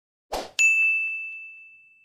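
A quick whoosh, then a bright, clear ding that rings out and fades away over about a second and a half: an animation sound effect accompanying a thumbs-up 'Like' graphic.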